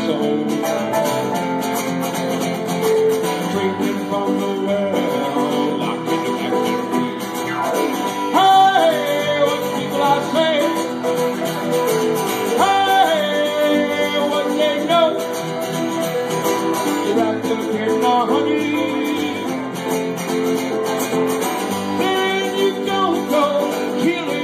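Live acoustic guitar and Roland XP-60 keyboard playing together in a country-style song, with a sung vocal line coming in a few times.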